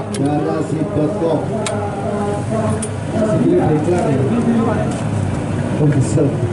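Indistinct voices talking over a busy background, with a couple of short sharp clicks.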